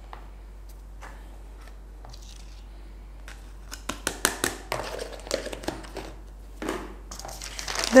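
A thin clear plastic lid being handled and pressed onto a plastic tub: a run of crackles and clicks starting about halfway through. Near the end comes a rustle of paper.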